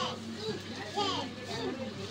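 Children's voices chattering and calling in the background, high-pitched and rising and falling, over a steady low hum.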